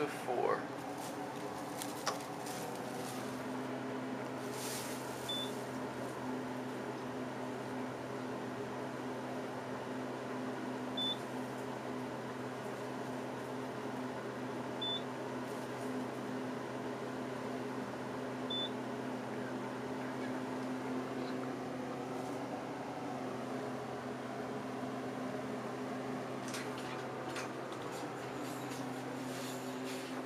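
Traction service elevator car travelling up: a steady hum made of several low droning tones, with a short high beep four times a few seconds apart as it passes floors. The hum drops away near the end as the car stops.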